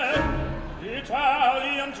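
Opera with orchestra: a deep low orchestral swell in the first half, then operatic voices sing a phrase with wide vibrato from about halfway.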